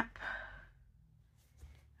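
A woman's breathy exhale, a soft sigh that fades out within the first second, then near quiet with a faint click about one and a half seconds in.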